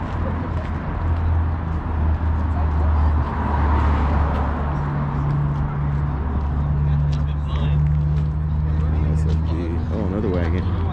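A car engine idling steadily, a low hum that stays even, under the background voices of a crowd.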